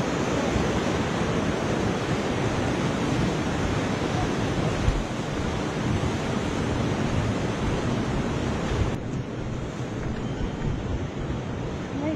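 Fast mountain river rushing over rocks, a steady hiss of water; about nine seconds in it turns duller and a little quieter.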